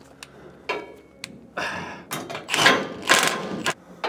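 Cordless impact wrench driving and tightening the bolts of a truck's receiver hitch bracket, after a few light clicks, in several short bursts of rapid hammering in the second half.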